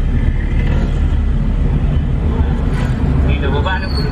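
Steady low rumble of a car's engine and road noise heard from inside the cabin while driving slowly, with faint voices near the end.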